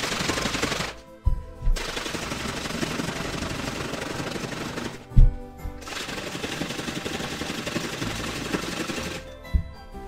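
Water-filled bottles being shaken hard, sped up into a rapid rattle, in three bouts, each followed by a thump as a bottle is set down on the table. Background music plays underneath.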